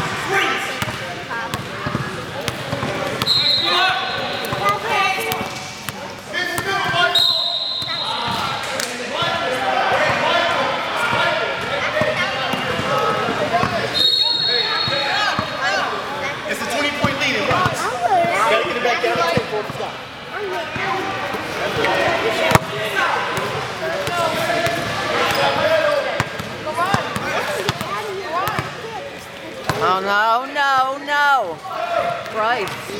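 Indoor basketball game: a basketball bouncing on a hardwood gym floor amid the chatter and shouts of players and spectators, with three short, high referee whistle blasts at about 3, 7 and 14 seconds in.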